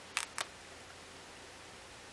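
Two short, sharp clicks about a fifth of a second apart from a felt-tip marker being handled as drawing on paper begins, over faint room hiss.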